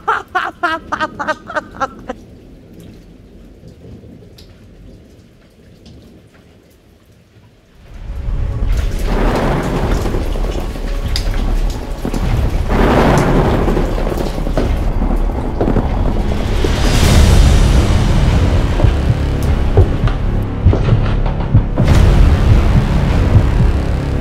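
Thunderstorm sound effect: steady rain with rolling thunder, starting about eight seconds in after a quiet stretch and swelling in several waves, with music underneath.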